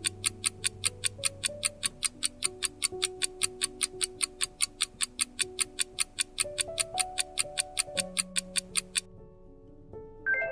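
Ticking countdown-timer sound effect, about four even ticks a second, over soft background music. The ticking stops about a second before the end, leaving only the music.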